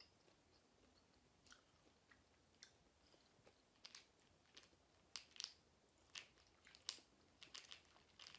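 Faint chewing of a soft fruit candy: scattered small wet mouth clicks, growing more frequent in the second half.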